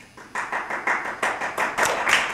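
A small audience clapping, starting about a third of a second in and growing louder.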